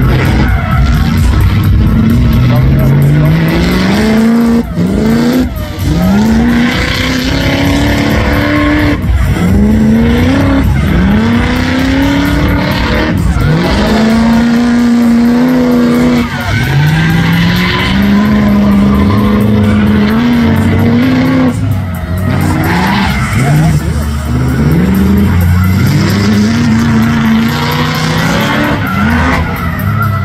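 BMW E30 drift car's engine revving hard over and over, its pitch climbing with each push of the throttle and dropping back, while the rear tyres squeal as it slides sideways.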